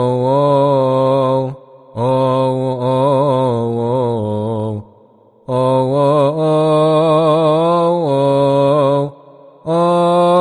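A solo male voice chanting a Coptic psalm verse in melismatic liturgical style: long held notes with wavering ornaments, in phrases broken by short pauses for breath every three to four seconds.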